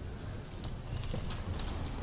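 Scattered, irregular light clicks and knocks over a low steady rumble of a large hall: the small noises of a seated audience and a standing choir stirring between songs.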